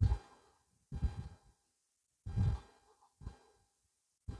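A person's breaths or sighs close to the microphone: four short puffs about a second apart.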